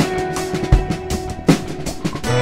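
Band music from a rock song: a drum kit plays strong kick-and-snare hits about every three-quarters of a second, with quicker cymbal strokes between them, over a held chord.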